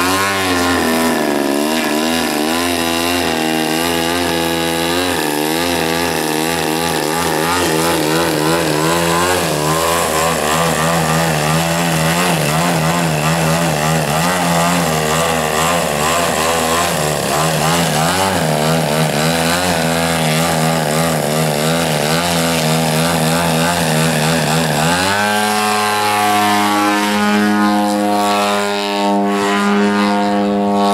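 DLE 111 twin-cylinder two-stroke gas engine on a 1/3-scale clipped-wing Cub RC plane, its pitch wavering up and down with constant throttle changes while the plane hovers on its propeller. About 25 seconds in it jumps to a steady, higher-pitched full-throttle run as the plane climbs away.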